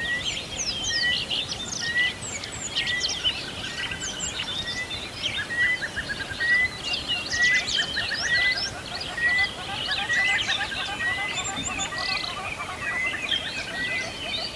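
Many birds chirping and calling at once, with one short rising note repeated just under twice a second.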